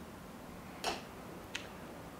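Two short, sharp clicks about two-thirds of a second apart, the first louder, over faint room tone.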